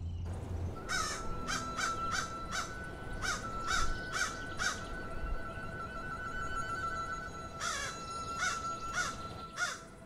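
A crow cawing again and again in short harsh calls, about two a second, pausing midway and then calling again, over a steady faint high tone.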